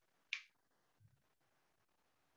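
A single short, sharp click about a third of a second in, against near silence.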